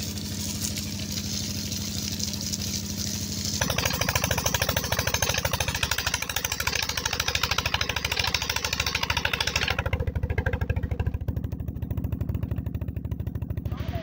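Stationary engine, the kind that drives a farm water pump, running steadily with an even, fast beat, together with water gushing and splashing. The rush of water drops away about ten seconds in, leaving the engine on its own.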